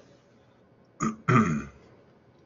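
A man clearing his throat once, about a second in: a short rasp followed by a brief voiced sound.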